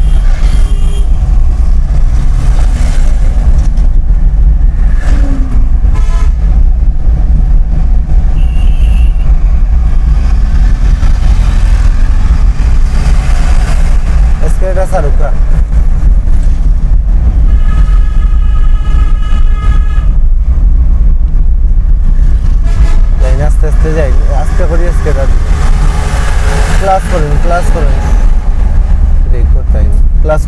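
Steady low rumble of a car's engine and road noise heard inside the cabin while driving. A vehicle horn sounds for about two seconds a little past the middle, with shorter horn toots near the start and about a third of the way in.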